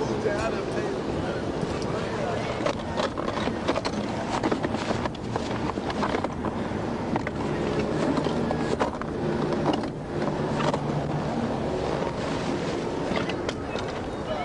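Indistinct, muffled voices of officers over steady roadside engine and wind noise on a police microphone, with frequent rustling and knocking.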